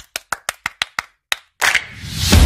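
A rapid run of evenly spaced sharp clap-like hits, about six a second, stopping a little over a second in. Near the end a short rushing noise sets in.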